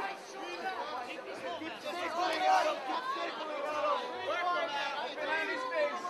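A crowd of fight spectators shouting and talking over one another, many voices overlapping without a break.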